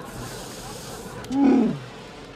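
Chewbacca's Wookiee growl: one loud call about a second and a half in that slides down in pitch.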